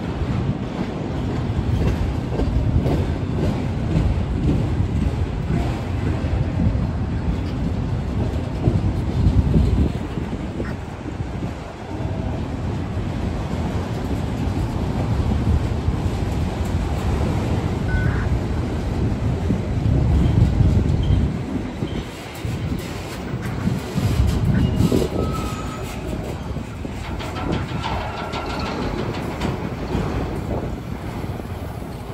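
Freight train of autorack cars rolling past: steel wheels rumbling on the rails with a clickety-clack of wheels over rail joints. It swells louder about nine seconds in and again about twenty seconds in.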